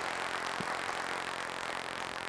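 Large seated audience applauding: a dense, steady patter of many hands clapping.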